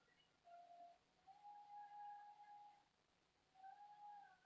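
Near silence: room tone, with a few faint, held high tones.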